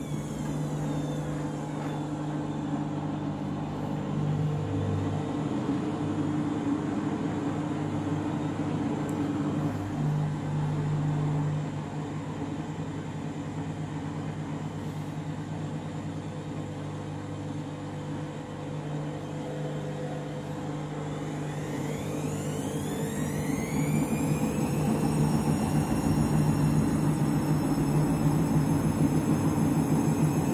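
Candy washing machine running with a steady low hum while water still sits in the drum; about twenty seconds in, the drum motor starts to speed up with a rising whine that levels off a few seconds later into a steady higher whine as the drum gathers speed for the spin.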